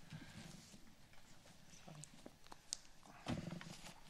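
Quiet room noise with a few faint small clicks, and a brief, louder low sound a little after three seconds in.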